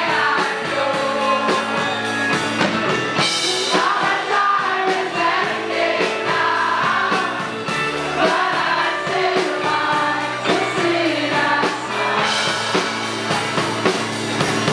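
Live rock band playing loudly (drums with steady beats and electric guitar) with many voices singing the vocal line together, typical of a crowd singing along at the mic. Cymbal crashes about three seconds in and again near the end.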